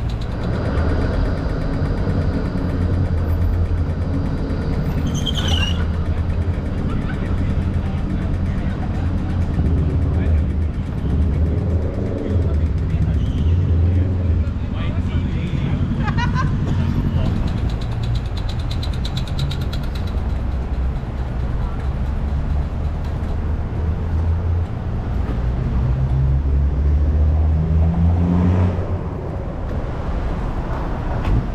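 Busy city-street ambience: a steady low rumble of traffic with vehicles passing and indistinct voices of passers-by. A vehicle's engine note rises near the end.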